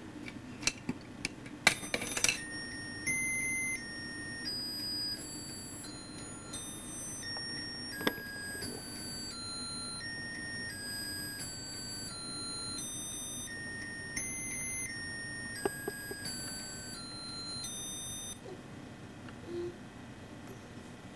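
A few plastic clicks and knocks about two seconds in. Then a toy plays a simple electronic melody of beeping notes, about two a second, stepping up and down in pitch, and stops near the end.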